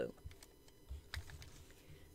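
A few faint, light clicks and taps scattered over a second or so, as drawing tools and a metal watercolour tin are handled on the desk.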